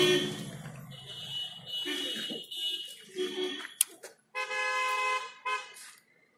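A vehicle horn sounding, with a steady held blast of about a second near the end and a few sharp clicks between.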